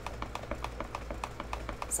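Wooden stir stick tapping against the sides of a plastic tub while stirring thick paint mix, a quick, even ticking of about six taps a second.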